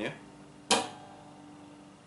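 Acoustic guitar: a single percussive thumb strike on the sixth (low E) string, one sharp hit a little under a second in, with the strings ringing on and fading afterwards.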